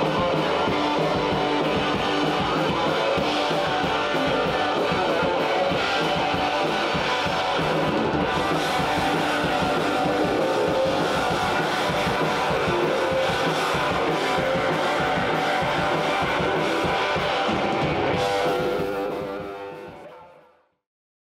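Garage rock band playing, with electric guitar and drum kit. The music fades out over the last second or two.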